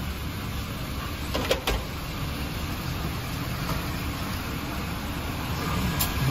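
Steady low rumble of an idling car, heard from inside its cabin, with a brief faint click about a second and a half in.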